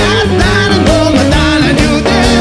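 Live rock band playing loudly, with the drum kit beating a steady rhythm under bass and guitar.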